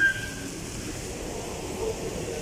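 Steady rumble of a moving escalator in a large mall hall, with a short high tone at the very start.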